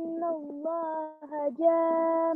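A child reciting a line of the Quran in a melodic chant, drawing out the long vowels (madd) as held, steady notes, each up to about a second long, with short breaks between them.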